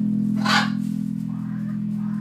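Electric bass guitar letting one sustained note ring on, with a brief harsh rasp about half a second in.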